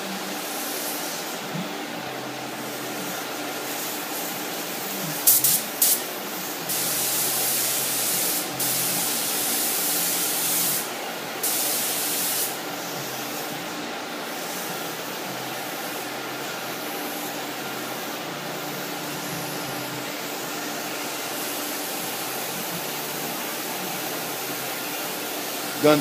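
Compressed-air gravity-feed touch-up spray gun spraying paint in hissing bursts: two quick squirts about five seconds in, then a long pass of about four seconds and a shorter one of about a second. Under it runs the steady noise of the booth's exhaust fans.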